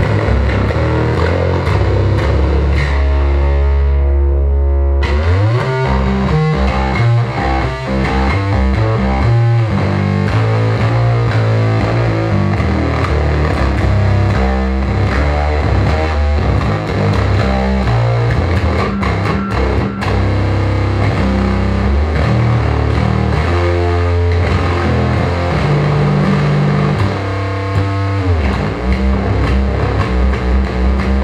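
Electric bass played through a TC Electronic Röttweiler distortion pedal and amplified: heavy distorted riffing. A long held low note rings for the first few seconds, then gives way to faster, busier playing that runs on without a break.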